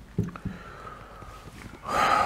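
Two short soft clicks early on, then near the end a man's quick, audible intake of breath just before he speaks.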